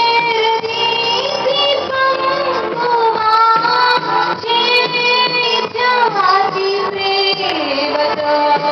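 A young woman singing a Telugu Christian song into a handheld microphone, holding long notes with pitch slides, including a falling run about six seconds in.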